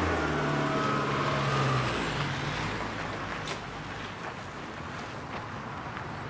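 A taxi's engine pulls away: its note rises over the first two seconds, then the car's sound fades steadily as it drives off.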